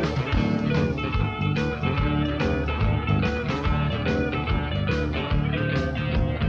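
Instrumental passage of a rock band's demo recording: guitar playing over bass and a steady drum beat, with no singing.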